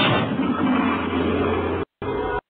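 Theme-song recording played back over the stream, at the point right after its announcer's intro: a loud, noisy roar without clear voice or tune, which cuts out suddenly for an instant near the end, a dropout in the stream.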